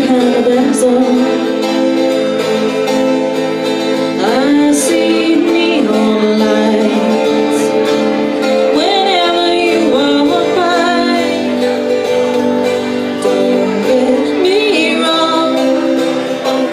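Live acoustic folk-rock song: a woman singing lead into a microphone, with a steel-string acoustic guitar strummed underneath.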